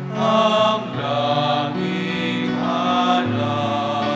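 Slow church hymn during Holy Communion: sung voices over sustained accompaniment, moving through long held chords.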